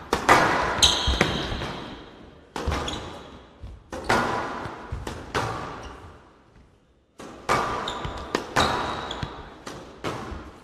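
Squash rally on a glass show court: the ball is struck by rackets and smacks off the walls in sharp, echoing hits every half second to second and a half, with brief high squeaks from shoes on the court floor. A short near-silent pause comes about two thirds of the way through before the hits resume.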